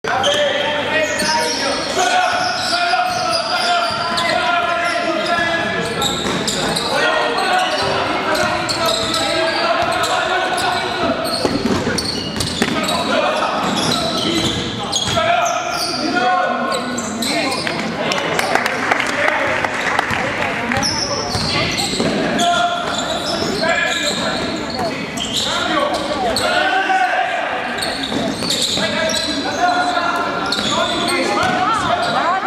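Live basketball game sound in a reverberant sports hall: a ball bouncing on the court amid players' sneaker steps and indistinct shouts from players and the bench.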